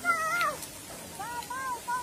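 High-pitched children's voices squealing and calling out with a wavering pitch: one call ends about half a second in, and another starts about a second in.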